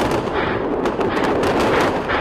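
Weapons fire: a dense run of loud cracks and bangs over a continuous rumble.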